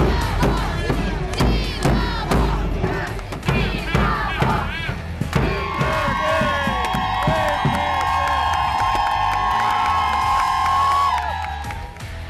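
A crowd of fans chanting and cheering to a bass drum, with many short shouts over the drum beats. About halfway through, a long held shout lasts several seconds before it breaks off.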